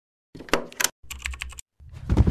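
Computer keyboard typing sound effect: a quick run of key clicks in two bursts, then a louder, deeper sound starts just before the end.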